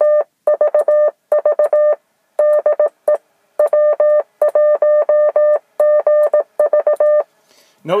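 Yaesu FT-857D transceiver's CW sidetone: a single steady beep keyed on and off in Morse code dots and dashes, sent as a short test transmission to check the antenna match. It pauses briefly twice in the first few seconds and stops shortly before the end.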